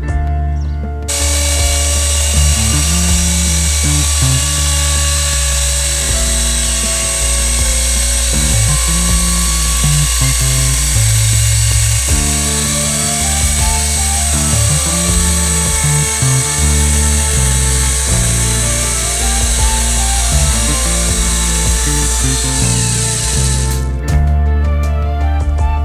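Electric chainsaw (Logosol E5) on a chainsaw mill ripping through a dry oak log: a steady, even cutting whine that starts abruptly about a second in, heard under background music.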